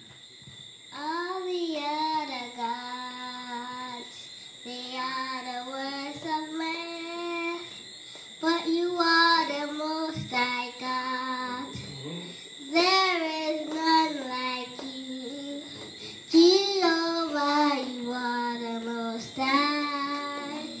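A young girl singing solo into a microphone, unaccompanied, in phrases of long held notes with short breaks between lines.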